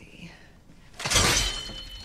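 Movie sound effect: the spring-lock mechanism inside an animatronic suit snapping shut, a sudden loud crash about a second in that fades over the next second, with a faint metallic ringing after it.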